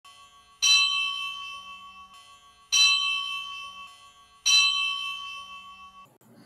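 A bell struck three times, about two seconds apart, each stroke ringing out and slowly fading.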